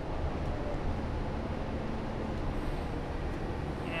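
Steady low rumble of the engine and cabin of a New Flyer Xcelsior XN60 articulated bus, heard from inside the bus as it draws up at a stop.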